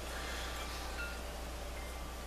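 Faint, scattered chime-like tones ringing over a steady low hum and hiss.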